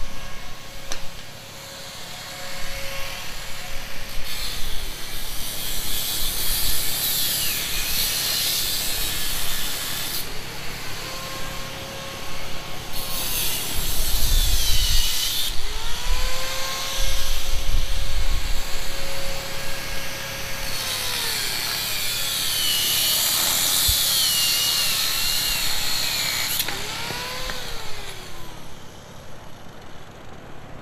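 Corded angle grinder cutting a shopping cart's steel frame. Its motor whine holds steady, then drops in pitch each time the disc bites into the metal, giving a harsh grinding hiss that lasts several seconds, three times in all. The whine climbs back as the load comes off, and the sound dies away near the end.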